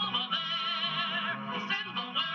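A woman singing in an old-fashioned operatic style with heavy vibrato, over piano accompaniment, from a black-and-white film's soundtrack heard through a TV speaker.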